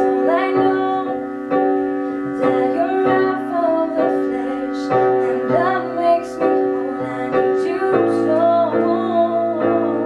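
Piano accompaniment playing held chords that change every couple of seconds, with girls' voices singing sustained, wavering melody lines over it.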